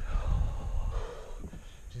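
A person breathing out heavily, fading over the first second or so, over a steady low wind rumble on the microphone.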